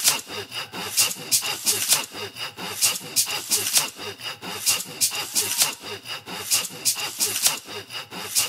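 Rhythmic scraping strokes repeating about two to three times a second in an even beat, with faint steady high tones under them.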